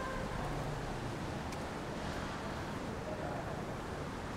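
Steady low outdoor background rumble with no distinct events, while a faint held tone dies away right at the start.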